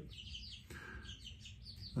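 Chicks peeping faintly in a run of short, high chirps, with one slightly longer note about a second in.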